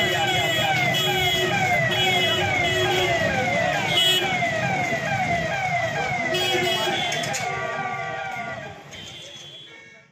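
An emergency siren wailing in quick falling sweeps, about two a second, over a street crowd's murmur; it fades out over the last two seconds.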